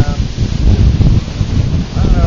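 Wind buffeting the microphone in loud, uneven gusts over the steady hiss of surf breaking on a sandy beach.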